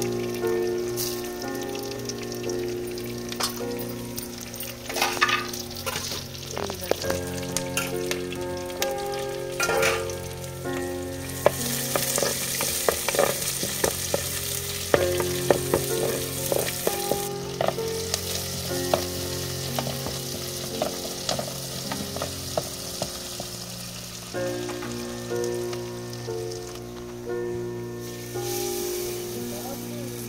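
Garlic, dried red chillies and sliced onions sizzling in hot oil in a pot while a wooden spatula stirs and scrapes against it in quick clicks. The sizzle grows stronger about twelve seconds in, and a melody plays underneath.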